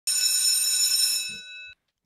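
A bell ringing steadily with a bright, high ring for over a second, then fading and cutting off abruptly.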